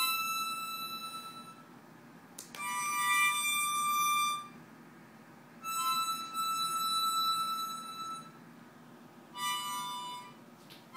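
A young child, new to the instrument, blowing a harmonica: held notes and chords in four separate breaths with short pauses between, the longest about two and a half seconds.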